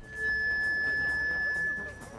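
Public-address microphone feedback: a single steady high-pitched whine held for about two seconds over faint background noise.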